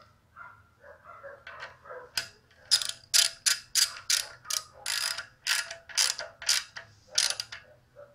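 Ratchet wrench clicking in quick runs as the distributor clamp is tightened to lock the distributor down in the engine case, after a couple of seconds of quieter handling.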